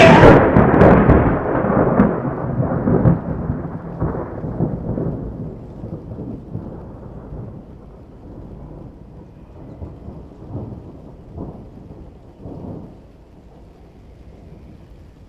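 A long roll of thunder that starts loud and slowly fades away, with a few smaller rumbles near the end.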